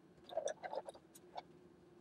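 Utility knife blade cutting into the thick plastic casing of a refrigerator water filter: a few faint, short scrapes and clicks in the first second and a half.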